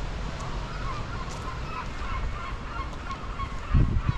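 A flock of birds calling, many short honking calls overlapping, over low wind noise on the microphone that swells in a louder gust near the end.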